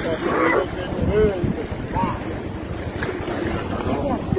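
Wind buffeting the microphone over small waves in shallow sea water, with a few short rising-and-falling voice-like calls about half a second, a second and two seconds in.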